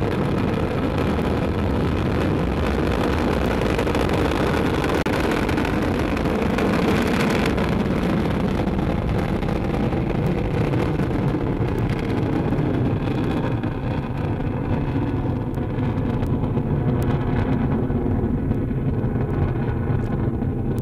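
Ariane 5 rocket at lift-off, its Vulcain core engine and two solid rocket boosters roaring continuously with scattered crackle. From about halfway through, the higher part of the roar fades and a deep rumble remains as the rocket climbs away.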